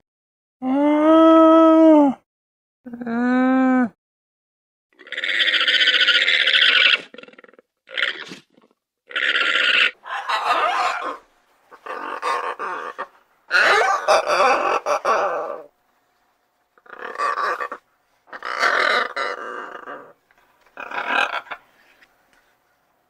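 A llama gives two pitched calls, each rising and then falling, followed by a harsher, noisier call. From about eight seconds in, macaws give a series of harsh squawks, about one every second or two.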